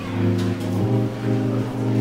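Background music with sustained bass and chord notes that change about once a second.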